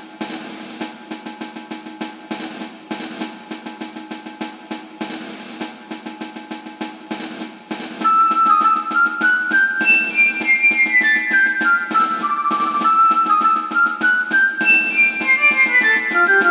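Background music: a steady drum pattern, joined about eight seconds in by a louder bright melody of short notes stepping downward in repeated runs.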